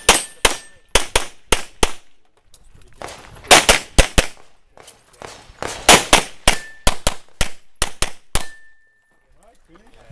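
Pistol shots from a 9mm Production-division handgun, about twenty sharp reports fired in quick strings with short pauses between groups, stopping about 8.5 seconds in.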